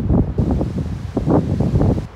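Wind buffeting the microphone in loud, irregular low rumbling gusts.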